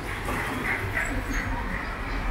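Street traffic rumbling steadily as a scooter and a car pass, with a brief run of short, voice-like sounds in the first second.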